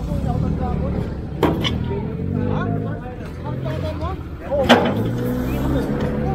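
Truck engine idling with a steady low rumble and voices in the background. Two sharp knocks come as debris is loaded onto the truck: one about a second and a half in and a louder one near the five-second mark.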